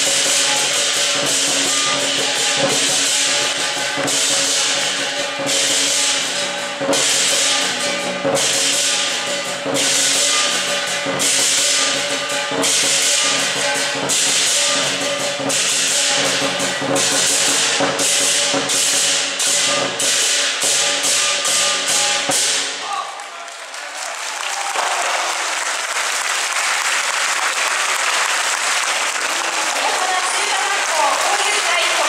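Lion dance percussion: a large Chinese drum with crashing hand cymbals playing a driving rhythm, the crashes coming closer together before the music stops about 23 seconds in. A crowd then applauds.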